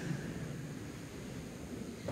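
A pause in speech: faint steady room tone of a large hall, a low hiss and hum, sinking slightly as the last words die away.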